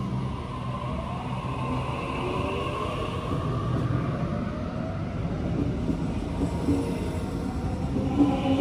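Sydney Trains double-deck electric train pulling out of the platform, its traction motors whining higher in pitch as it gathers speed, over a low rumble of the wheels on the rails.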